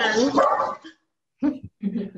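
Dogs barking in the background, heard over a video-call connection; the audio drops out briefly about a second in.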